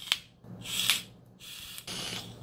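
Breathy hiss of air drawn through a vape tank atomizer as the box mod fires at about 70 watts, swelling and fading over about a second, followed by a softer steady hiss and a click near the end.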